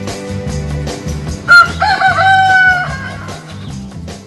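A rooster crowing once, about one and a half seconds in: a short first note, then a long held one. Background music with a steady beat plays underneath.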